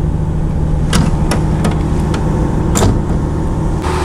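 Diesel railcar's engine and running noise, a steady low hum, loud through an open window, broken by a few sharp clicks and knocks.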